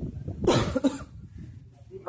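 A man coughs about half a second in, a short harsh burst, then a quieter lull.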